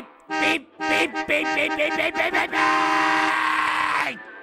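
Vehicle horn honked in a quick series of short blasts, ending in one long held blast for about the last second and a half.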